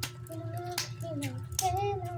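A child's voice singing a few held, wavering notes over a steady low hum, with several sharp clicks in between.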